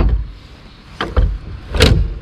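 Clunks and clicks from a Minn Kota Terrova trolling motor's bow mount as the motor shaft is swung down and seated in its stowed position: a hard knock at the start, two quick clicks about a second in, and another loud knock near the end.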